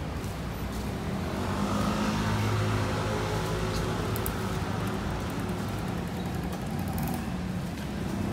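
Road traffic: a motor vehicle's engine passing over a steady traffic din, loudest about two to three seconds in.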